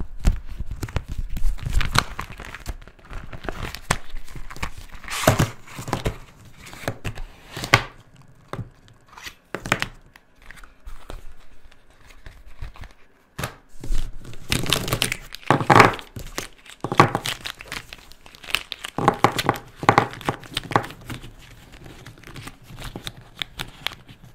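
Clear plastic packaging of a felt-tip pen set crinkling and rustling as hands slide the cardboard tray of pens out of it, in irregular bursts that are loudest about two-thirds of the way through.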